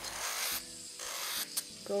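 Kupa UpPower electric nail drill on its lowest speed, its sanding band rasping against an acrylic nail in two short passes, one at the start and one near the end, with a quieter stretch between.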